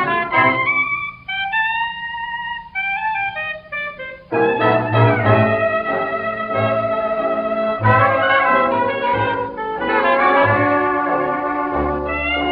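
A 1926 78 rpm recording of a New Orleans-style hot jazz band of cornet, trombone, clarinet, piano, banjo, string bass and drums. A single melody instrument plays a short line almost alone, then the full ensemble comes in about four seconds in and plays on together.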